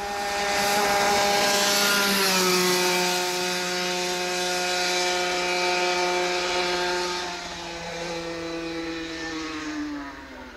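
A 125 cc racing kart's two-stroke engine running hard at high revs as the kart climbs past. Its pitch and loudness drop about two seconds in as it goes by, and it fades with the pitch sagging lower from about seven seconds in as it pulls away up the hill.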